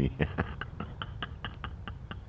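A man's quiet, breathy chuckling: short unvoiced puffs of breath about five a second, fading toward the end, over a low rumble.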